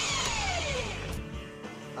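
Handheld electric belt sander's motor whining, its pitch falling over about the first second as it winds down, under trailer music.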